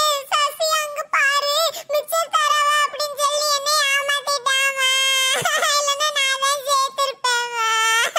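A high-pitched, sped-up cartoon voice in long, drawn-out, wavering notes with short breaks between them.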